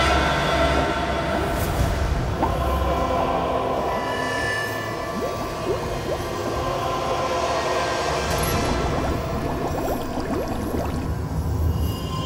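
Underwater sound design: a steady low rumble with many quick bubbling sounds from divers' breathing gear, under tense background music with held tones.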